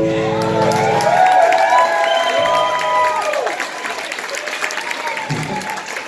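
A live country-rockabilly band's last chord rings and stops about a second in, then the audience applauds and cheers with several shouts.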